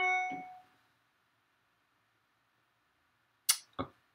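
A single bright metallic ding, several ringing tones struck together and fading out within about half a second, followed by near silence.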